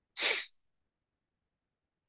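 A person's single short, sharp burst of breath, hissy and under half a second long, just after the start.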